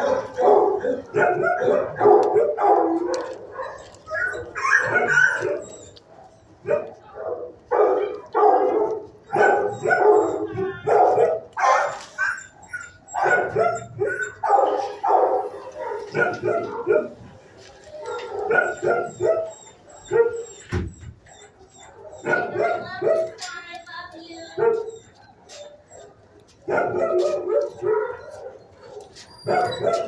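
Shelter dogs barking over and over, in short bursts with brief gaps, with some yipping.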